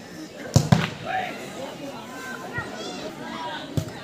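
A football being kicked on a grass pitch: two sharp thuds in quick succession about half a second in and another near the end, with spectators shouting.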